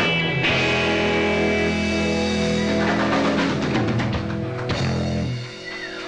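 Live rock and roll band playing, led by electric guitar with bass and drums. A chord is held for about five seconds and then cut off near the end.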